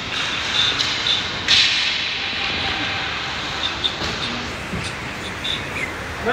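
Ice hockey play: skates scraping and carving on the ice with sticks clacking, and a sharp knock about a second and a half in, with faint voices in the rink.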